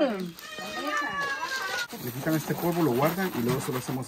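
A single long, high-pitched animal call, falling slightly in pitch over about a second and a half, followed by a low voice talking.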